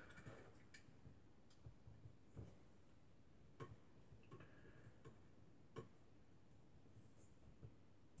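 Near silence with faint, irregular small clicks and taps: an Allen key turning the small 3 mm screws that hold a stepper motor to the carriage plate, and the metal parts being handled.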